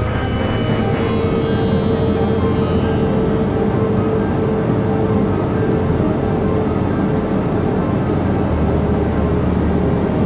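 Loud, steady roar of jet airliner engines with a faint high whine slowly falling in pitch, over a held musical drone.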